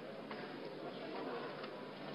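Faint, indistinct murmur of many people's voices in a large hall, with a few light clicks or knocks.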